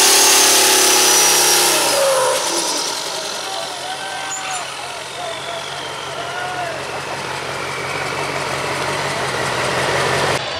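Turbocharged Duramax V8 diesel pickup at full throttle at the end of a pull, its engine note and high turbo whine falling away about two seconds in as it lets off. It then runs steadily at low speed while voices are heard over it.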